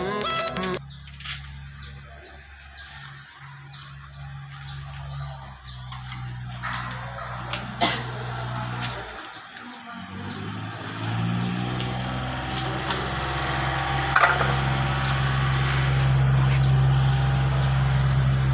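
A bird chirping in a steady series of short high chirps, about three a second, over background music with a low sustained drone that grows louder near the end.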